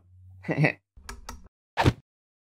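A short laugh, then a title-animation sound effect: a few quick clicks about a second in and a single sharp, keystroke-like hit near the end as the first word of the title appears.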